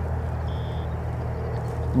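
A steady low motor-like hum under outdoor background noise, with one short high note about half a second in.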